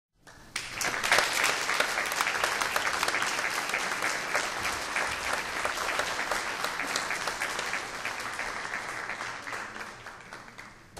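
Audience applauding: dense clapping that starts about half a second in and thins out near the end.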